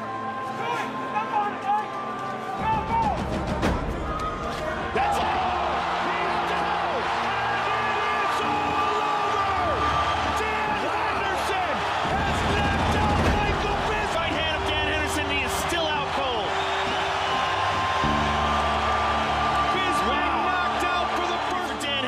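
Background music with a bass line that shifts every few seconds, with voices mixed in underneath.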